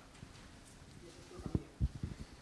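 A handheld microphone being handled: a few dull low knocks in quick succession about a second and a half in, after a quiet stretch of room hiss.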